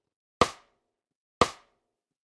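Metronome count-in: two short, sharp clicks about a second apart, counting in a bass exercise in time with an on-screen countdown.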